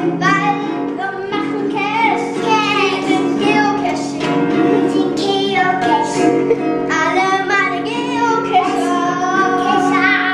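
Children singing a song in German to strummed acoustic guitar.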